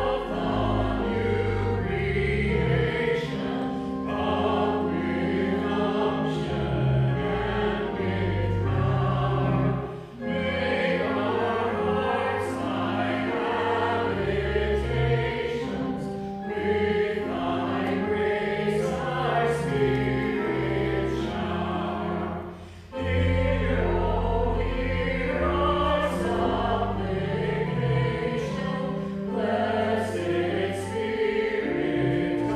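Choir singing a hymn over sustained organ chords, in long phrases with short breaks between them about ten seconds in and again a little past twenty seconds.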